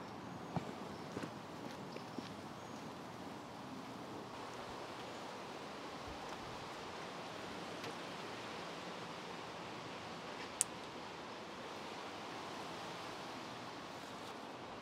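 Steady outdoor background hiss, with a few faint ticks in the first couple of seconds and one sharp click about ten and a half seconds in.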